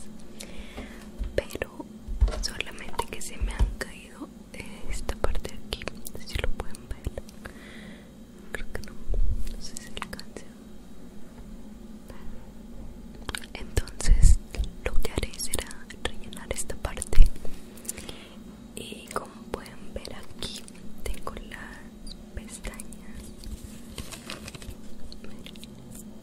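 Soft close-up whispering, with scattered clicks and several low thumps from hands handling things right at the microphone. The thumps are the loudest sounds, the strongest near the middle and about two-thirds of the way through.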